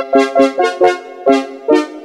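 Casio CZ-1000 phase-distortion synthesizer being played: a quick run of short, detached bright notes, about eight in two seconds.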